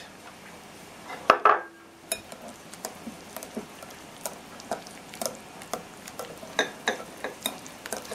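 A wire whisk mixing beaten eggs into cottage cheese in a glass bowl, its wires tapping and clicking against the glass at an uneven pace. A single louder knock comes about a second in.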